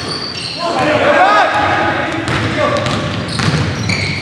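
A basketball being dribbled on a hardwood gym floor while players call out to each other, the sounds echoing in a large gym.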